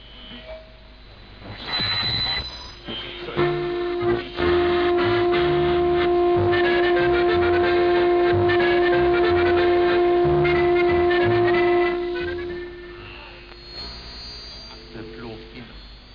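Medium-wave radio broadcast received on a simple transistor audion (regenerative receiver): music, with a long steady held note from about three seconds in to about twelve seconds, then fading.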